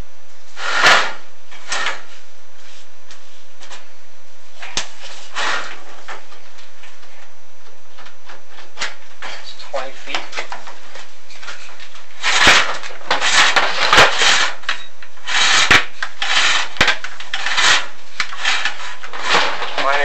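Irregular scraping, rubbing and knocking as a chimney inspection camera and its cable are worked down a ribbed metal oil flue liner, busier in the second half. A steady low hum runs underneath.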